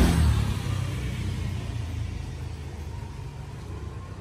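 Low rumble of a passing road vehicle, loudest at the start and fading away.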